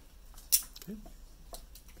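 A single sharp click about half a second in, followed by a few faint ticks, with a child saying a short "okay" between them.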